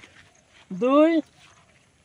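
A man's voice saying one drawn-out word, 'dui' ('two'), about a second in, as part of a spoken countdown. Otherwise only faint background.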